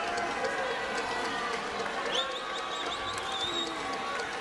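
Arena crowd noise, with a referee's whistle trilling high for about a second and a half past the middle, as the play is blown dead at the pile.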